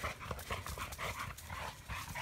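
Quiet, irregular rustling and footfalls in leaf litter on a woodland trail, with a dog moving about nearby.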